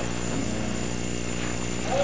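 Steady electrical hum with hiss and a thin high whine, unchanging, with no voices over it.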